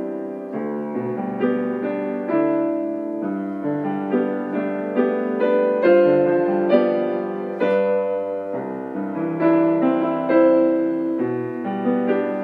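Piano playing a hymn arrangement in full chords, a new chord struck every half second or so.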